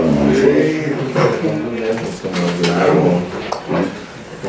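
Men talking in a meeting room; the speech is loud but not clearly worded.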